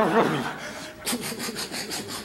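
A voice sliding down in pitch, then from about a second in a fast, even rasping chop of about eight beats a second, a helicopter rotor sound.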